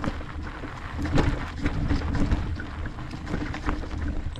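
Electric mountain bike rolling downhill over a dirt singletrack: continuous tyre rumble on the trail, with the bike rattling in irregular clicks and knocks over bumps, the loudest jolt about a second in. Wind rumbles on the microphone underneath.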